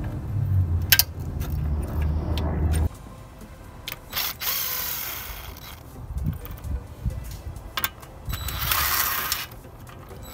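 Pliers working spring hose clamps on an engine's air intake tube: sharp metal clicks, then two scraping rushes of about a second each, near the middle and near the end, over background music.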